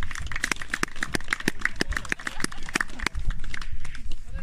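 A small group of people clapping: many irregular, overlapping hand claps that thin out near the end.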